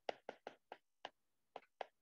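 A faint, irregular series of about seven short taps from a stylus striking a tablet screen during handwriting.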